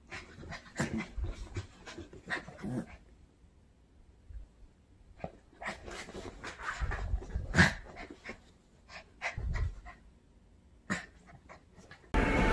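A small white bichon-type dog panting and snuffling in irregular bouts while it plays and burrows in a fabric blanket, with rustling of the cloth and a few soft thuds.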